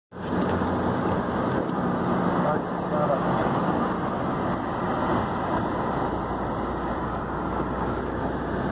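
Wind and road noise rushing in through an open window of a moving car, a steady rush with a low engine hum beneath it.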